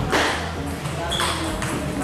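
Table tennis rally: the celluloid ball clicking sharply off bats and table a few times, over a background of voices in a large hall.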